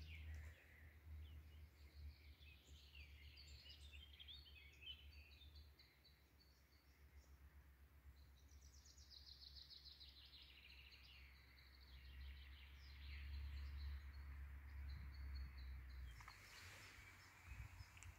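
Faint birdsong: runs of high chirps and trills, one about a second in and another around eight or nine seconds in, over a low rumble.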